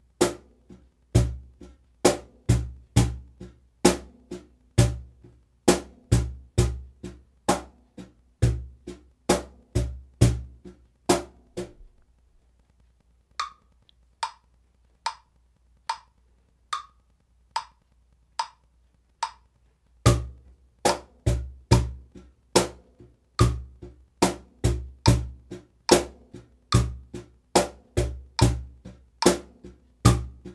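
Cajón played with both hands in a steady eighth-note groove: deep bass tones on beat one, the second half of beat two and the first half of beat three, with higher slaps on the other eighths. About twelve seconds in, the playing stops for some eight seconds, leaving only the even ticks of a metronome at about 72 beats a minute, then the groove starts again.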